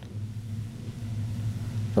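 Steady low hum with a faint hiss under it: background room and recording noise, with no speech.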